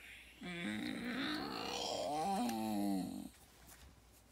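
A person's drawn-out wordless vocal sound, about three seconds long, whose pitch wavers and dips near the end.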